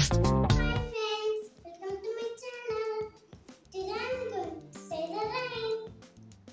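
An upbeat intro jingle with a steady drum beat cuts off about a second in. A young boy's voice follows in short phrases, its pitch rising and falling.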